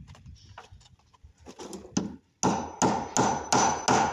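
Hammer blows on the wooden window frame: after some light knocking, a run of about six sharp strikes starting about halfway through, roughly three a second, each with a faint metallic ring.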